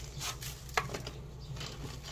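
A few light taps and scrapes of a gloved hand handling a small plant pot and potting soil, the sharpest about three quarters of a second in.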